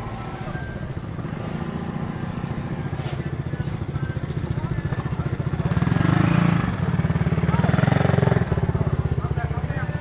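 Small motor scooter engine passing close by. It grows louder and is loudest about six to eight seconds in, over street traffic and people's voices.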